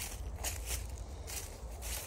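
Footsteps on dry leaf litter and grass, several crunching steps about two a second, over a steady low rumble.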